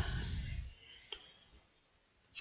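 A man's breathy exhale close to the microphone, fading out over about half a second, followed by a single faint click about a second in.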